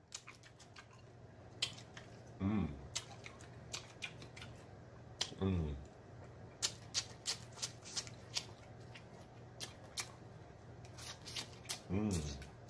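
Close-up eating sounds: many short wet smacks and clicks of lips and mouth as crab meat is sucked and chewed off the leg shells. Two short falling "mmm" moans come a few seconds apart.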